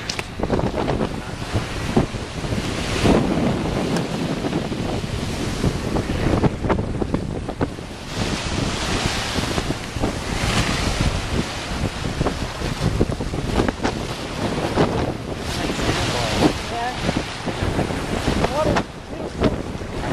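Small ocean waves breaking and washing up the beach, swelling and easing every few seconds, with wind buffeting the phone's microphone.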